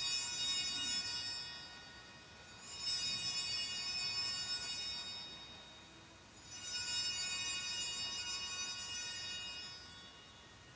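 Hand-rung altar bells (sanctus bells) shaken three times, each ring a shimmering cluster of high tones lasting two to three seconds before fading. They mark the elevation of the consecrated host.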